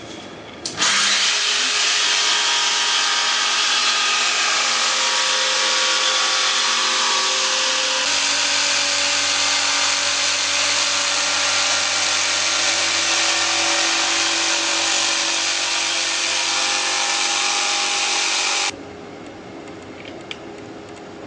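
Protool JSP 120 E jigsaw cutting through 18 mm dry plywood with a clean-cut blade and the pendulum action switched off. It starts abruptly about a second in, runs loud and steady, and stops abruptly near the end.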